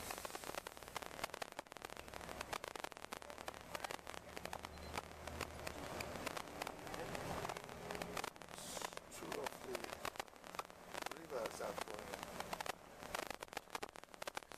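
Indistinct voices inside a moving tour bus, under a dense, constant crackle and a low hum from the bus.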